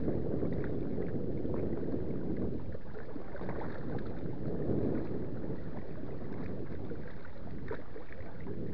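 Lake water splashing and lapping at a kayak's hull as it is paddled, a steady low rush with small scattered splashes, swelling slightly about halfway through.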